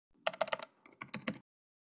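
Keyboard typing: about a dozen quick keystroke clicks in two short bursts, stopping about one and a half seconds in.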